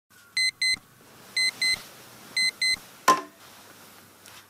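Audiosonic digital alarm clock beeping in pairs of short, high, electronic beeps, one pair a second, three pairs in all. About three seconds in comes a sharp knock as the clock is slapped, and the beeping stops.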